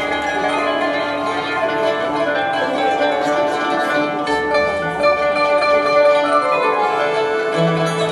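Maghrebi Andalusian classical ensemble playing a melody together: a qanun plucked in runs of notes, with violins and an oud.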